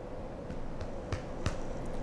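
Quiet room tone with a faint steady hum and a few faint short clicks, about four, in the second half.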